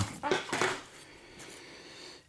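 Bent aluminum test strips clinking and scraping together as they are picked up and handled. It is a brief rattle in the first second, then faint room noise.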